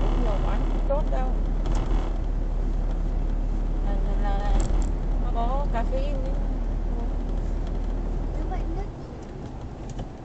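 Steady low engine and road rumble heard from inside a moving car's cabin, with brief snatches of talk between the occupants. The rumble drops away about a second before the end.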